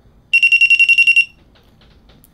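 Nebula 4000 Lite 3-axis gimbal's beeper sounding a rapid string of high beeps for about a second, starting a moment in: its response to a single press of the mode button.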